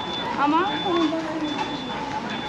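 An electronic beeper repeating a short, steady, high-pitched beep a little more than once a second, over the noise of a busy pedestrian street. A passer-by's voice is heard close by in the middle.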